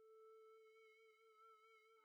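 Near silence, with a faint held synth note from the background music, wavering slightly.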